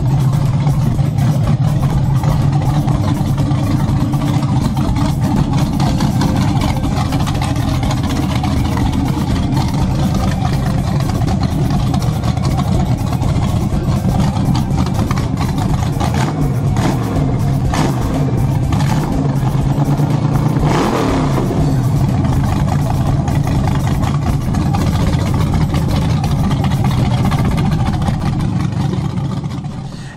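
GM LS V8 on an engine run stand running on open headers, idling steadily, then blipped and revved up and back down a few times about two-thirds of the way through. The sound fades out near the end.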